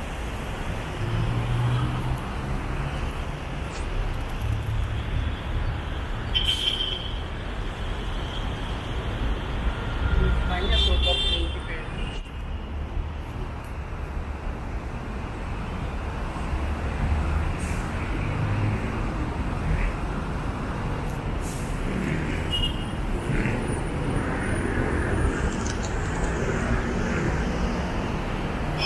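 Continuous city road traffic: vehicle engines running and passing, with a couple of brief horn sounds.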